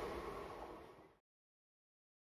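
Noise of a passing passenger train receding and fading away, cut off to silence about a second in.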